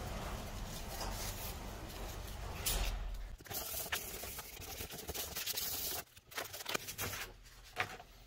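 Hand sanding with 400-grit sandpaper on a painted 5.0 engine badge plate, a steady scratchy rubbing that cuts back the paint on the raised lettering. The rubbing stops about six seconds in, followed by a few light clicks of handling.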